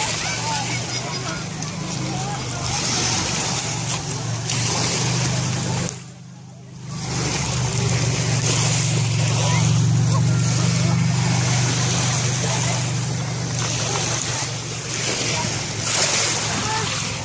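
Beach ambience on a pebble shore: small waves lapping and washing over the pebbles, with people's voices, under a low steady rumble. Everything drops away for about a second around six seconds in.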